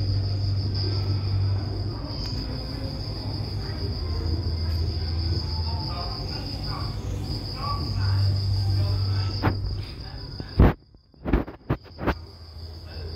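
Steady high-pitched insect trill, with a low hum that swells and fades underneath. About ten and a half seconds in, a few sharp knocks come with brief cut-outs of sound.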